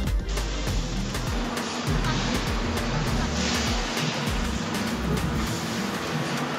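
Background music with shifting bass notes over a steady rushing noise.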